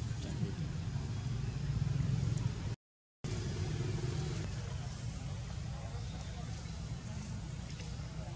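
Steady low rumble with faint, indistinct voices over it. The sound cuts out completely for about half a second around three seconds in.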